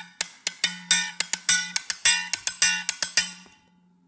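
Thermos flask struck with a small stick in a quick rhythm, mixing short dry knocks, made with a hand covering its mouth, and longer ringing tones with the mouth open. The playing stops a little after three seconds in, the last tone dying away.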